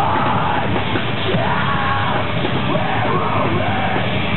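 Live metalcore band playing loud and steady, the vocalist screaming into the microphone over distorted guitars and drums.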